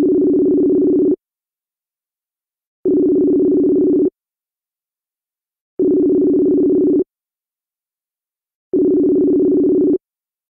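Ringback tone of an outgoing phone call. A steady, low two-pitch tone rings four times, each ring about a second and a quarter long with under two seconds of silence between: the call is ringing and has not yet been answered.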